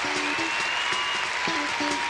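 Audience applauding over background music, a run of short pitched notes with a few held tones.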